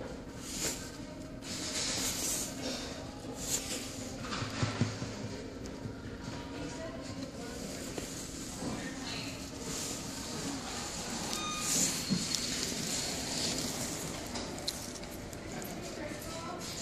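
Indoor shop background: indistinct voices over a steady low hum, with irregular soft rustles and knocks and a short beep or two about two-thirds of the way through.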